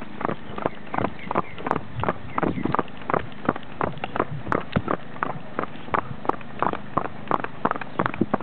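A horse's hooves striking asphalt at a trot: sharp clip-clop hoofbeats in an even, steady rhythm of several strikes a second.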